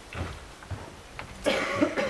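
A person coughing once, briefly and loudly, about one and a half seconds in, with a few faint knocks before it.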